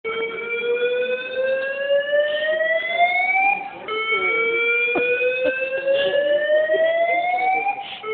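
Building fire alarm sounding a slow-whoop evacuation tone: a rising tone that sweeps upward for nearly four seconds, drops back and starts again, twice over.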